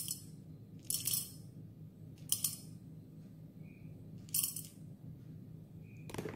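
Roasted coffee beans poured in small amounts into a stainless steel dosing cup, each pour a short rattling clatter. There are three such pours, about a second, two and a half seconds and four and a half seconds in, with the tail of an earlier one at the very start.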